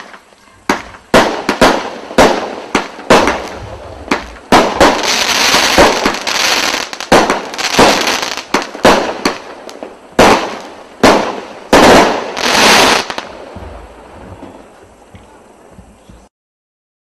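Benwell 'Galaxy Attack' 16-shot firework cake firing: a quick run of sharp thumps of shots launching and bursting, running together into a continuous rush in the middle and again near the end, then dying away over the last few seconds.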